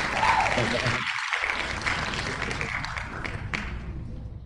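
Applause sound effect from an online name-picker wheel announcing a drawn winner. It is an even clapping hiss that slowly fades away towards the end.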